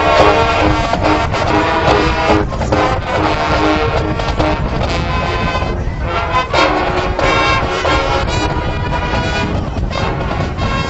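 High school marching band playing, with sustained brass chords over drums.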